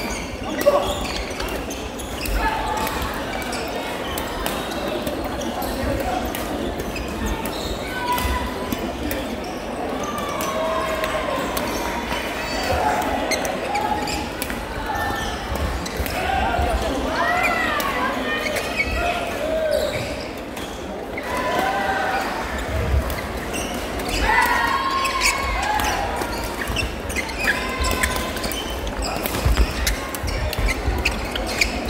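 Badminton doubles being played in a large sports hall: sharp racket strikes on the shuttlecock and footfalls on the court floor, over a steady background of many indistinct voices echoing in the hall.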